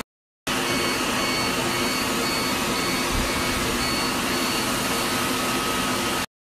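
Laser hair-removal machine running: a steady whooshing hiss from its cooling system, with a faint high beep repeating at an even pace as the handpiece fires.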